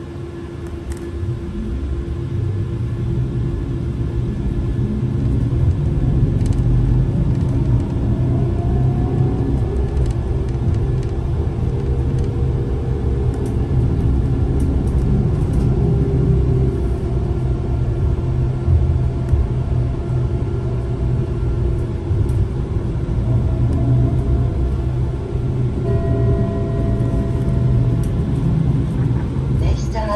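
Solaris Trollino 18 electric trolleybus heard from inside the cabin, pulling away and running along the road. The sound grows louder over the first several seconds as it gathers speed, then holds as a steady low rumble, with a rising whine from the electric drive about eight to ten seconds in.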